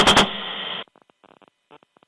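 The end of a burst from an AH-64 Apache's 30 mm chain gun, about ten shots a second, which stops about a quarter-second in. It is followed by about half a second of radio hiss, then faint crackles on the radio line.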